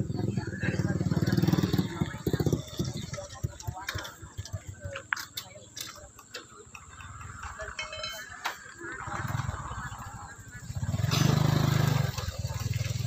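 Indistinct voices of people talking in the background, with a low rumble in the first couple of seconds and again near the end.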